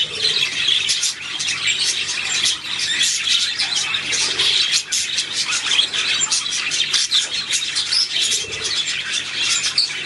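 Budgerigars chattering and warbling: a dense, continuous stream of rapid high chirps with no pauses.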